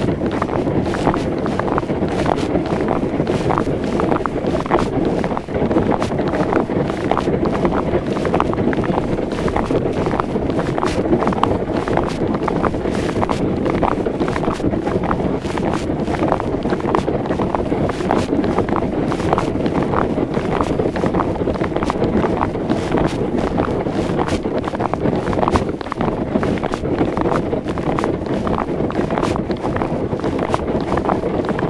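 Steady wind noise buffeting the microphone, with frequent short crunches and clicks of boots walking on thin lake ice.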